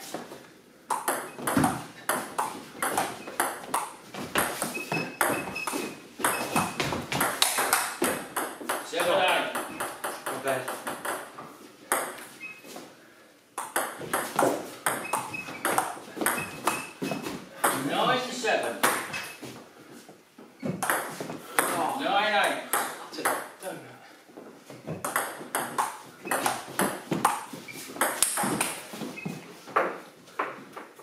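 Table tennis rallies: the ball clicks rapidly back and forth between the bats and the table in several runs of quick hits, separated by short pauses between points. Voices are heard in the hall between and during the rallies.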